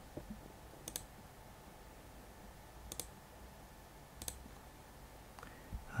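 A few faint, isolated clicks of computer input, spaced about a second or two apart, with a quiet room between them.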